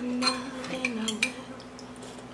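Metal spoon clinking and scraping against a glass ramen bowl, several light clinks in the first second or so, with a brief hummed voice under them.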